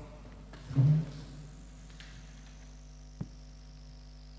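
Steady electrical hum from the microphone and sound system, with a brief voiced 'eh' just under a second in and a single sharp click a little after three seconds, while papers are leafed through.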